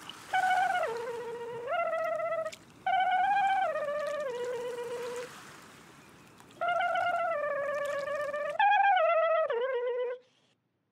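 Cartoon boat horn tooting a short tune of wavering held notes that step down and up, in phrases with short gaps between them.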